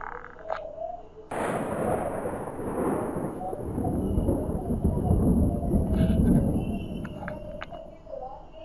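Thunder from a nearby lightning strike: a sudden sharp crack about a second in, then a long rolling rumble that swells deep and loud and fades away near the end.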